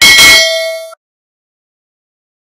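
Bell notification sound effect: a single bright metallic ding that rings with several tones for about a second and then cuts off.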